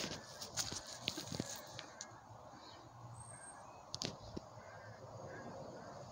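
Quiet outdoor background with a few faint, scattered clicks and knocks.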